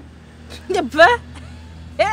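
A woman's brief wordless vocal sound, two quick sliding-pitch syllables about a second in, over a steady low hum.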